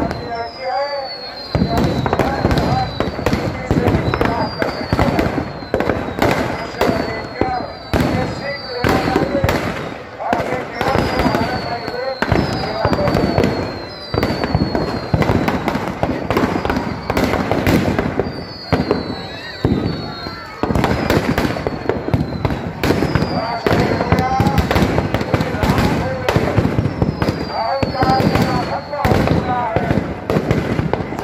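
Firecrackers packed inside a burning Ravana effigy go off in a rapid, continuous string of bangs. Short falling whistles repeat about once a second throughout.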